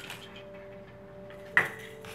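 A single sharp clack about one and a half seconds in, with a short ringing tail: a toy knocking against the woven toy basket as the baby rummages in it. Faint steady tones hum underneath.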